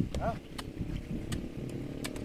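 A steady low hum of an engine running throughout, with a low thump at the start and scattered light clicks over it.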